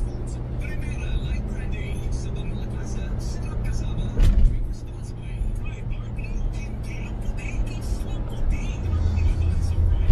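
Background music with a steady beat and a low bass line, with one loud hit about four seconds in.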